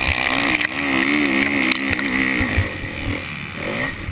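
Motocross bike engine at racing speed, heard close from the bike itself, its pitch wavering up and down as the throttle is worked, a little quieter in the last second or so.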